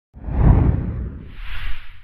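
Whoosh sound effects for an animated logo intro: a deep whoosh that swells in and peaks about half a second in, then a second, lighter and higher whoosh near the end.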